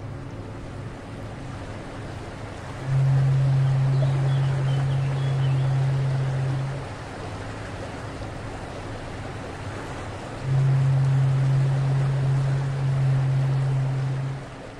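Steady wash of water and waves. Over it a long, low, steady tone sounds twice, each time for about four seconds, and each time louder than the water.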